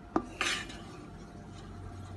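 A wooden spoon knocks once, sharply, against a nonstick cooking pot, then gives a short scrape as it stirs the liquid in the pot.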